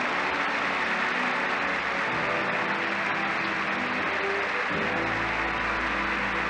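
A large theatre audience applauding steadily while an orchestra plays, with a low bass line entering near the end.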